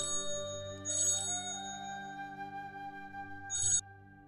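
Mobile phone ringtone: three short, bright, high rings over soft background music. The last ring cuts off just before the end as the call is answered.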